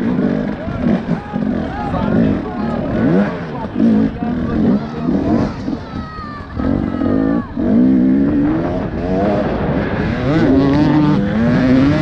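Enduro dirt bike engine revving hard under load, its pitch rising and falling every second or so as the throttle is worked over a slippery track.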